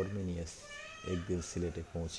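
A man reading aloud in Bengali in a steady narrating voice. About half a second in there is a brief higher-pitched sound.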